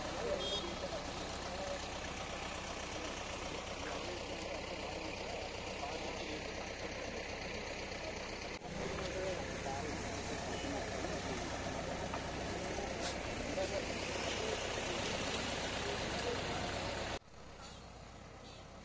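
Several people talking at once over a steady low hum, typical of roadside crowd chatter. The sound changes abruptly about halfway through and drops sharply near the end.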